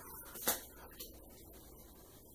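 Uno playing cards being handled in the hand: a short crisp snap about a quarter of the way in, then a fainter tick about halfway, over quiet room tone.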